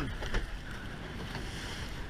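Wind buffeting the microphone over the steady rush of sea water along the hull of a surfboat being rowed through surf.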